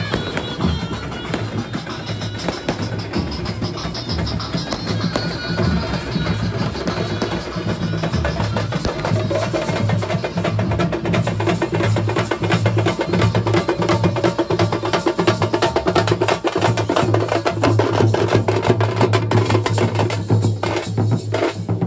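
Procession band playing: several drums beaten with sticks in a fast, dense rhythm, with a wind instrument's melody line above them. The drumming grows louder and busier through the second half.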